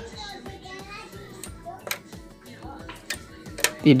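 Faint children's voices with low background music, and a few sharp clicks from about halfway on.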